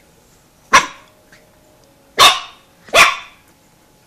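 Boston Terrier puppy giving three short, sharp barks, the first about a second in and the last two close together near the end.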